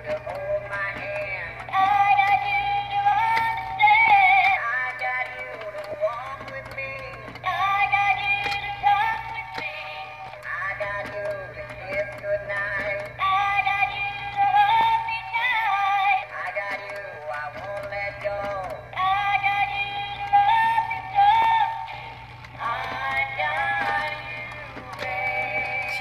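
Animated skeleton bride and groom Halloween figures singing a recorded duet through small built-in speakers. The song sounds thin and tinny, with the two voices taking turns, over a steady low hum.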